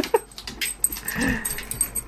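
A dog vocalizing twice while fetching a tennis ball: a short sound just after the start and a longer one about a second in.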